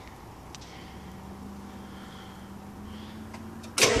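A faint steady low hum, then near the end the Ford Econoline ambulance's diesel engine starts suddenly and loudly on a cold start.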